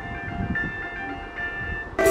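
Faint electronic melody of steady tones stepping in pitch over a low background rumble, then a phone's incoming-call ringtone cuts in loud at the very end.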